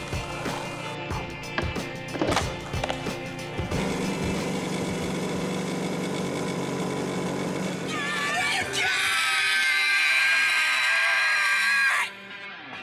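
Skateboard on asphalt: a few sharp pops and clacks of tricks and wheels rolling. Then a motor scooter's engine runs steadily. Near the end, two people shout and scream loudly and exuberantly, all of it over background music.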